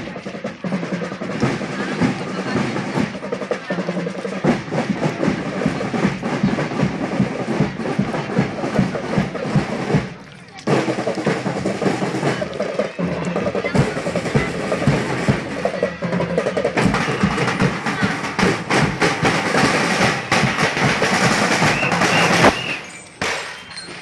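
Parade marching-band drums playing: snare drum rolls over bass drum beats, pausing briefly about ten seconds in and again near the end.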